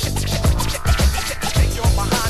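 Hip-hop beat in an instrumental break without rapping: a steady drum pattern and bass, with turntable scratching over it.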